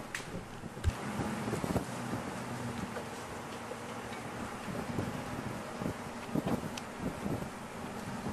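Ford Raptor pickup driving off-road: a low engine hum under wind noise on the microphone, with a few light knocks.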